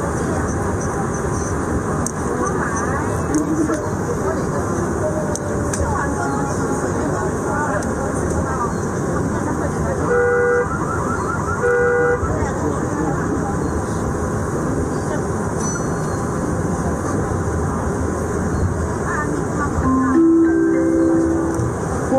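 Steady running rumble of a metro train heard from inside the carriage, with two short toots about a second and a half apart midway, and another short tone near the end.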